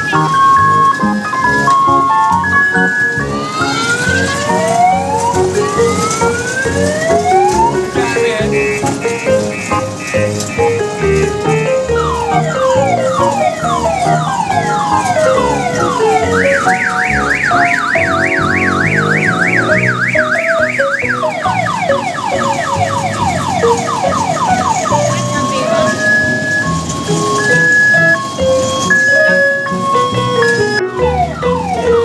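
Electronic sound box of a children's mini train ride playing a simple beeping tune, broken a few seconds in by rising whooping sweeps and, from about halfway, by a fast warbling siren effect before the tune returns.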